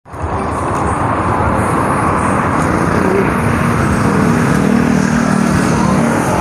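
Loud street traffic: motor vehicles passing close by on the road, with a steady engine tone coming in about halfway through.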